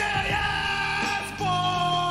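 Wrestling entrance music playing loud, with a voice holding one long note over it from about halfway through.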